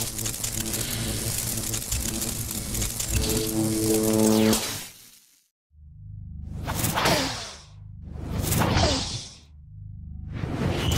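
Sound-design effects: a crackling electric-discharge effect over a low drone for about five seconds, fading out, then a low rumble with two whooshes about two and three seconds later.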